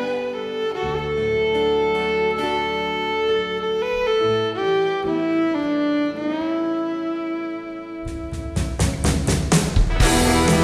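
Fiddle playing a slow melody of held, sliding notes over a light accompaniment. About eight seconds in, the band comes in with a steady beat of drum hits and guitar strums.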